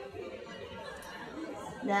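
Faint background chatter of people in a large hall. Near the end a woman's voice comes in with "Now,".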